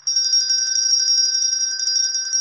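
Small brass hand bell shaken rapidly, its clapper striking many times a second over a steady, high, bright ringing.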